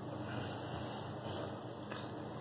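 Steady low hum over a faint, even background noise, with no distinct event.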